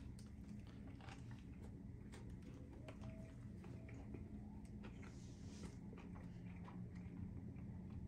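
Faint chewing of a mouthful of juicy hamburger: soft, wet clicks scattered throughout, over a low steady hum.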